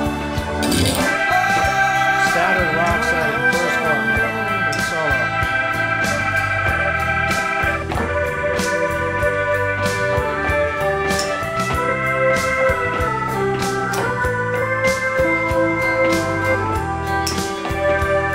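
Hammond B3 organ holding sustained chords over a recorded pop song with singing and guitar.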